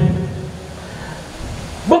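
A pause in a man's speech over a microphone and loudspeakers: his last words fade out in an echo, then low, steady background noise until he speaks again near the end.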